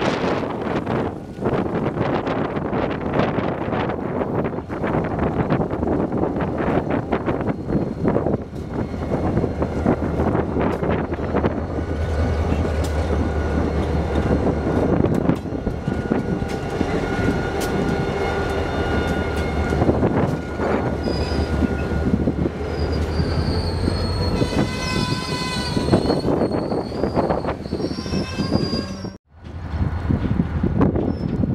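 Freight train led by a diesel locomotive passing close by, the engine's low drone strongest in the middle as it goes past, followed by the clatter of hopper car wheels over the rails. High squealing tones come in over the second half, and the sound drops out suddenly for a moment just before the end.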